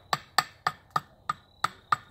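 Hatchet hewing an axe-handle blank of knotty, twisted Osage orange, roughing out the handle's shape: quick, short chops, about seven sharp knocks in two seconds.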